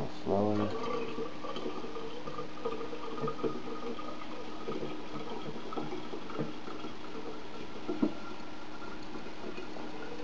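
Fermented cabbage mash and liquid being poured from a glass jar into a mesh sieve over another glass jar: faint trickling and soft splattering with a few light clinks, and a small sharper knock about eight seconds in. A short voiced hum comes just after the start.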